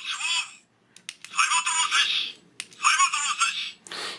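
The MP-44 Optimus Prime backpack's built-in sound unit plays short recorded Japanese voice lines of Convoy through a tiny, tinny speaker, three in a row. There are a couple of sharp clicks about a second in, which fit the backpack's button being pressed.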